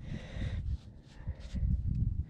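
Low, uneven rumble of wind buffeting the microphone, with faint rustles and small clicks as gloved fingers handle a small metal buckle.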